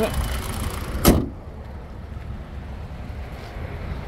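Car hood shut with one sharp bang about a second in, followed by a steady low rumble.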